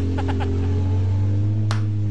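Jet ski engine running at a steady pitch, with a sharp click near the end.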